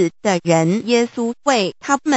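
A synthesized text-to-speech voice reading aloud in steady, evenly paced syllables.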